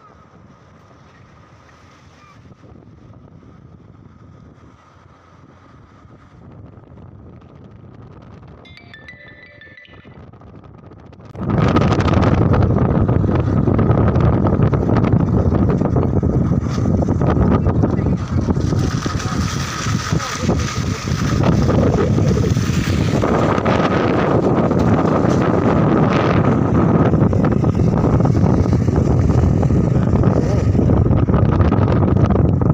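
Wind buffeting the microphone of a phone filming from a moving vehicle, over road and engine noise. It comes on suddenly and loud about eleven seconds in, after quieter running noise.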